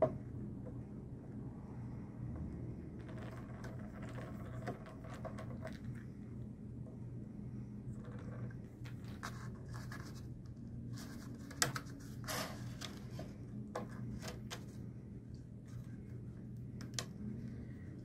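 Small screwdriver scraping and clicking against corroded screws in an autoharp's wooden frame as they are worked loose, with a few sharp clicks about two-thirds of the way through, over a steady low hum.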